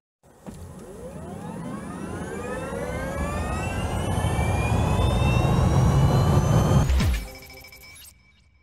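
Logo intro sound effect: a rising whine in several pitches over a swelling low rumble that builds for about seven seconds, then cuts off with a sharp swoosh into a brief ringing chime that fades.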